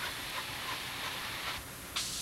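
A steady hiss with no distinct events, strongest in the upper range, which thins out near the end.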